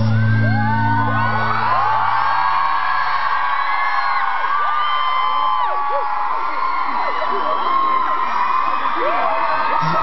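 Concert crowd screaming and cheering, many high overlapping shrieks rising and falling, over a held note from the band that fades out a few seconds in.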